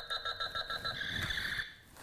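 Talking Buzz Lightyear action figure playing an electronic sound effect: rapid high beeps, about five a second, that turn into a continuous warbling tone and cut off shortly before the end.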